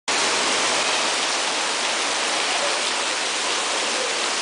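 Water falling and splashing steadily into a hot spring pool, a continuous even rush.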